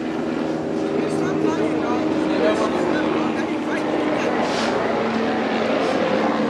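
A vehicle engine running steadily, a low even hum under indistinct voices nearby.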